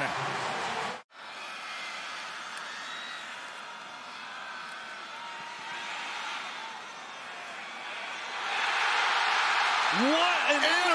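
Stadium crowd noise from a football broadcast, cutting out for an instant about a second in, then steady, and swelling louder near the end as a play unfolds.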